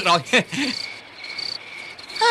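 Crickets chirping: a high, thin trill that comes in short repeated spells.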